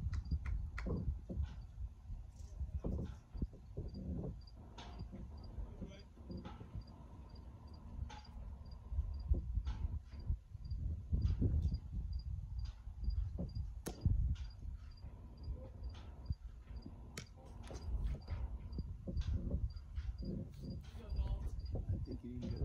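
Outdoor ambience: an uneven low rumble of wind on the microphone, with an insect chirping steadily at about two to three chirps a second and scattered faint clicks. One sharp crack comes about two-thirds of the way through.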